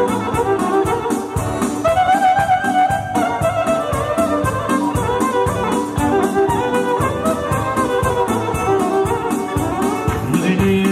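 Instrumental passage of live Albanian folk wedding music: a violin playing a wavering melody over electronic keyboard, with a steady, even drum beat.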